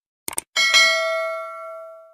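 A quick pair of mouse-click sound effects, then a notification-bell ding that rings on a few steady pitches and fades away over about a second and a half.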